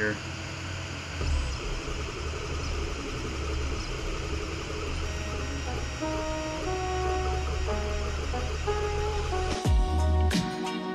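Steady hiss and low hum of the laser engraver's cooling fan running. About halfway through, background music with plucked guitar-like notes fades in over it, and a beat with percussion starts near the end.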